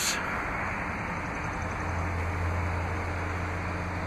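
Steady outdoor background noise: a hiss, with a low hum that comes in and strengthens about a second and a half in.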